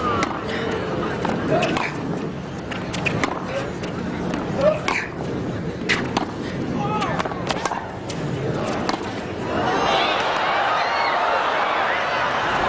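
Tennis rally: racket strikes on the ball and ball bounces as sharp knocks at irregular intervals, over a murmuring crowd. From about ten seconds in, the crowd noise swells.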